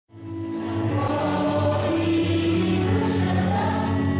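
A choir singing long held notes, fading in over the first second.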